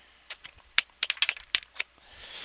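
A quick, irregular run of about a dozen clicks, like typing on a computer keyboard.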